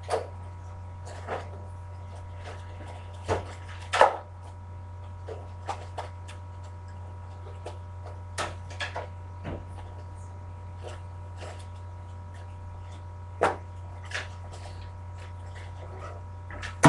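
Quiet classroom room tone while students write on their own: a steady low hum with scattered light clicks and knocks from the desks, the loudest about four seconds in.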